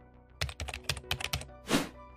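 Computer keyboard typing sound effect, a quick run of about ten key clicks, followed by a short whoosh near the end, over soft background music.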